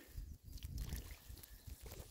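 Faint low rumble with no distinct sound event.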